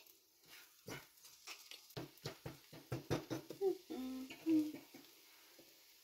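Spatula clicking and scraping against a nonstick frying pan as fried tortilla strips and bacon are tossed, in a quick run of sharp strokes. About a second after the strokes, a short squeaky, whining tone follows; it is the loudest sound.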